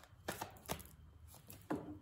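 A deck of tarot cards being shuffled by hand, giving a few faint, sharp taps as the cards slap together.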